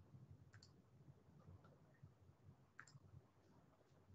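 A few faint computer-mouse clicks over near-silent room tone, the clearest about half a second in and just before three seconds.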